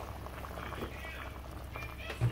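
Spiced water boiling in an open pressure cooker, bubbling with frequent small pops, as rice is stirred in with a wooden spatula.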